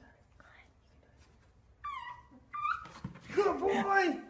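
Short high-pitched whining cries about halfway through, then people's voices talking and laughing in the last second or so.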